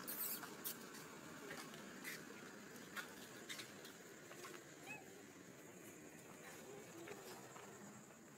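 A few faint, short squeaks from a small monkey, with scattered light clicks and ticks, over a quiet outdoor background.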